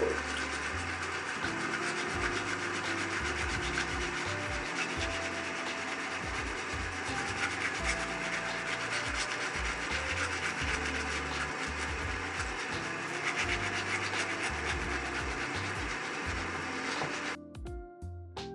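Brush scrubbing a dyed plastic lacrosse head under a running tap, a dense rasping hiss of rapid strokes over the water, working the black webbing spray off. It cuts off suddenly near the end.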